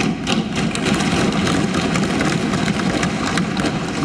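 Assembly members thumping their desks in approval during a budget speech: a dense, steady clatter of many overlapping thumps that starts suddenly and stops suddenly after about four seconds.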